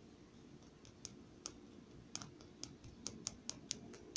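Faint, quick clicks, a few scattered at first and then about five a second from about two seconds in: a small homemade pulse-motor toy ticking as it runs off a weak alum and Epsom salt crystal cell.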